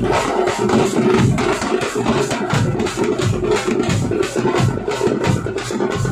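A tamate ensemble playing: many tamate frame drums struck fast with sticks, with large bass drums beating underneath, in a loud, dense rhythm of many strokes a second.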